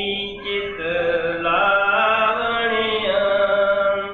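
A man's voice chanting a devotional verse in long, held, melodic notes.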